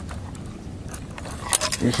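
Metal fishing lures and a spoon being handled in a tackle box: soft handling noise, then a few sharp metallic clicks about a second and a half in.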